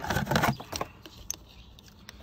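Clicking and rattling from a new crankshaft position sensor and its coiled plastic lead being handled, densest in the first half-second, then a few scattered ticks.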